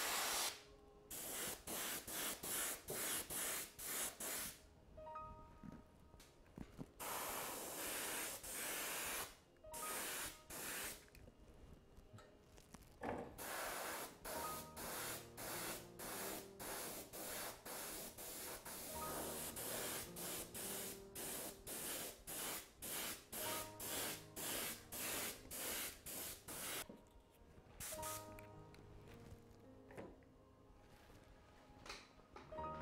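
Iwata Eclipse HP-BCS bottom-feed airbrush spraying in many short bursts of hiss, one after another about once or twice a second, with one longer spray of about two seconds.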